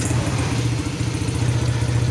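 Honda Astrea Legenda's single-cylinder four-stroke engine catching at the start and then idling steadily. It is running on a newly fitted Supra X 125 carburettor whose air screw has not yet been adjusted.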